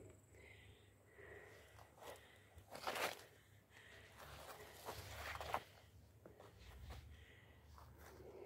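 Faint rustling of leafy radish tops and crunching of dry garden soil underfoot, with brief louder rustles about three seconds in and again around five seconds in.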